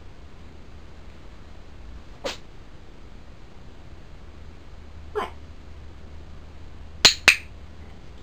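A dog-training clicker clicks twice near the end, a quarter second apart, sharp and loud, marking the cat's right move for a treat. Under it runs a low steady hum, with a brief faint sound a couple of seconds in.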